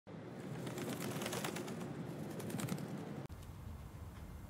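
Birds chirping, with a pigeon cooing. It cuts off suddenly about three seconds in, and a low, steady room hum follows.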